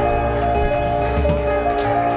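Live church praise band music: sustained keyboard chords held over a bass line that changes note a few times.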